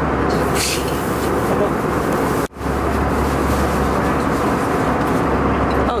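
Steady airliner cabin noise inside the passenger cabin, with a constant low drone under it; it drops out for an instant about two and a half seconds in, where the footage is cut.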